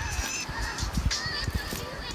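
Footsteps on a wet, leaf-covered woodland path, with irregular low thuds and rumble from the handheld phone, and a thin, high wavering bird call near the start.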